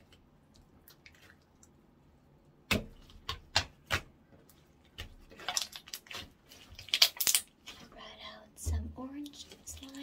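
Orange slime being stretched, squeezed and pressed into a ball by hand, starting about three seconds in: a few sharp pops, then a run of crackling, squelching clicks, and a couple of short, low squelches near the end.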